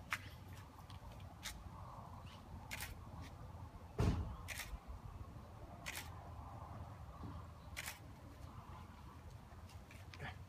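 Camera shutter firing single frames, about seven separate clicks spaced one to two seconds apart, with a dull thump about four seconds in.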